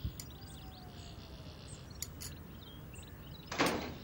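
Outdoor ambience with faint bird chirps and a few light taps, like tableware on a table. Near the end comes one short, loud hissing rush.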